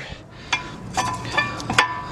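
Metal brake parts clinking as they are worked off a car's rear brake: several sharp clinks, roughly half a second apart, each leaving a brief metallic ring.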